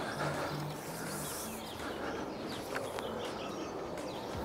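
Quiet outdoor background with faint, scattered bird chirps.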